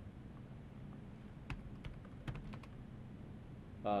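Computer keyboard keystrokes: a few short, sharp key clicks scattered over a couple of seconds as a word is typed, faint over a low steady room hum.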